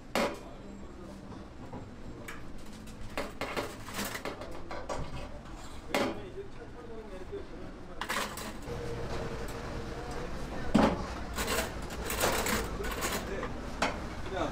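Scattered metal clanks and clicks of a steel rotisserie spit knocking against a stainless steel sink as whole raw chickens are pushed onto it, the knocks coming more often and louder in the second half.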